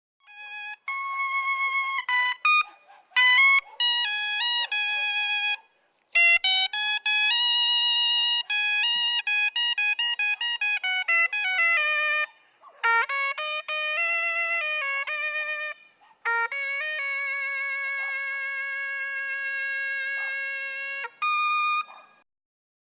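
Corneta china, a Cuban double-reed horn with a flared metal bell, playing an unaccompanied melody in short phrases with brief breaks between them. It ends on one long held note, then a short final note.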